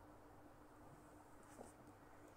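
Faint scratching of a pen on paper as simple figures are drawn, with a brief click about one and a half seconds in, over a low steady hum.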